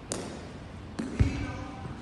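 Cricket ball and bat in an indoor net hall: a sharp knock at the start, then a click and a heavy thud just past a second in, the thud the loudest, each echoing in the large hall.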